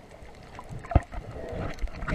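Muffled underwater water noise picked up by a camera held below the surface, with one sharp knock about a second in.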